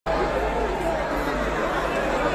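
Crowd chattering: many voices talking at once, steady throughout, with a low hum underneath.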